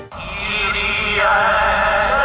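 A chorus of voices chanting a sustained, wavering line, coming in suddenly and moving to a new pitch about a second in.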